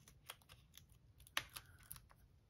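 Faint scattered clicks and taps of fingers handling and positioning small cardstock pieces on a craft mat. One sharper tap comes a little past halfway.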